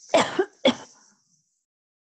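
A woman clearing her throat: two short harsh bursts about half a second apart near the start.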